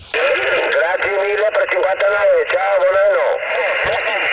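A distant amateur radio operator's voice received over the air on a portable QRP transceiver and heard from its speaker: thin, narrow-band speech without deep or high tones.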